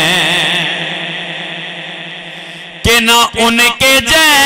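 A man singing a naat solo into a microphone. He holds one long wavering note that slowly fades, then comes back in loudly with short phrases about three seconds in.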